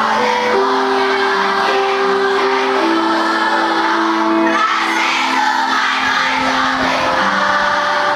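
A large group of primary-school children singing together in chorus, holding long notes that step from one pitch to the next.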